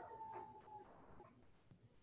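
Near silence: faint room tone from a home video call, with a faint tone trailing away in the first second.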